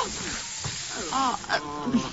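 Champagne hissing as it sprays and foams out of a just-opened bottle, with a short cry from the woman it soaks right at the start.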